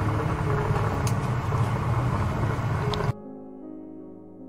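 A pan of broth boiling hard, a steady noisy bubbling and rumble. It cuts off suddenly about three seconds in and gives way to quiet piano music.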